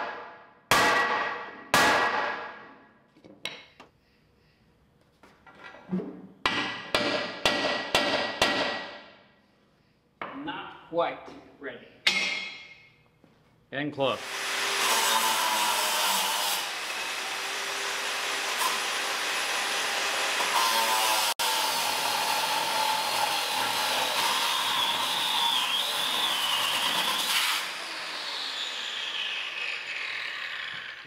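Sledgehammer blows ringing on the steel loader arm of a skid steer, in three bursts over the first dozen seconds, as the arm is knocked to free it from the cross member. About halfway through, an angle grinder starts and cuts steadily through the weld for about fourteen seconds, then winds down near the end.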